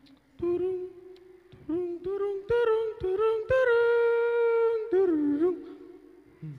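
A humming-like melody of pitched notes, rising in short phrases to one long held note in the middle, then two short bending notes near the end, with a few sharp clicks between the notes.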